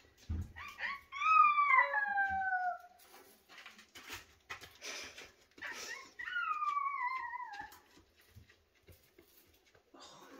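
An animal's two long wailing calls, each falling steadily in pitch over a second or more: one about a second in, the other past the middle. Faint clicks and rustles come between them.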